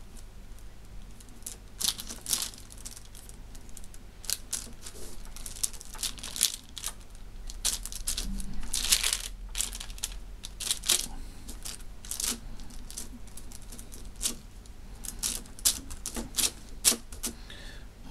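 A small blade chopping segments off a roll of striped epoxy putty, tapping down on a paper-covered wooden table in irregular sharp clicks.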